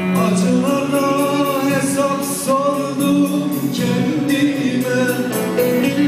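A man singing a Turkish folk song (türkü) live over an amplified band of keyboards and a plucked electric string instrument.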